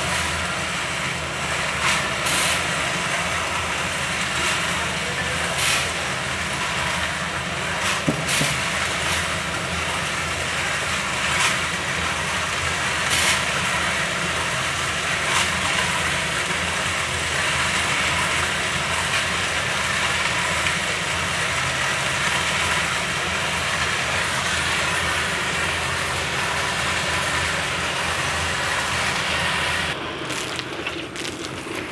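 Engine-driven drum concrete mixer running steadily with a batch of concrete turning in the drum. Sharp clanks come every couple of seconds, mostly in the first half.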